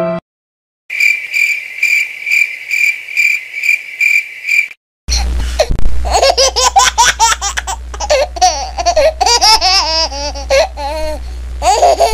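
A baby laughing in repeated giggles and squeals for the last seven seconds, over a steady low hum. Before it, a high chirping repeats about three times a second for about four seconds.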